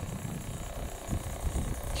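Low, irregular rumble of wind buffeting the microphone outdoors.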